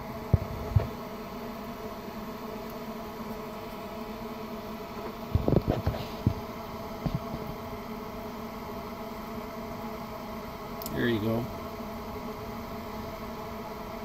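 A steady machine hum made of several held tones. A few sharp clicks come near the start, a cluster of knocks and clicks about halfway through, and a brief vocal sound near the end.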